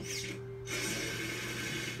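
Cartoon sound effect of a fire-truck water-sprayer nozzle spraying: a steady hiss that starts just under a second in, over background music. It is heard from a TV speaker.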